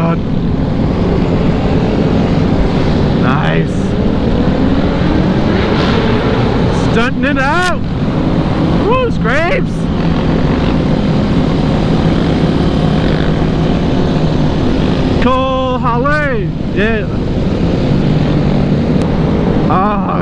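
Motorcycle engines running at cruising speed within a large group ride, with wind rush on the helmet microphone. A few short rising-and-falling sounds stand out: twice about seven to ten seconds in, and again about fifteen to seventeen seconds in.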